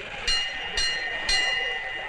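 Railway station bell struck three times about half a second apart, each stroke ringing on and fading, over a steady hiss of station ambience; three strokes are the traditional signal that the train is about to leave.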